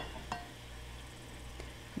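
Faint clink of a metal ice cream scoop against a bowl while scooping cooked ground turkey, over a low steady hum.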